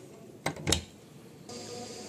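A camper van's exterior storage hatch is pushed shut: a click, then a louder knock as the door closes against its aluminium frame and catches, about a quarter second apart.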